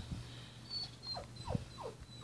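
Three short, faint squeaks, each falling in pitch, in quick succession in the second half, like an animal whimpering.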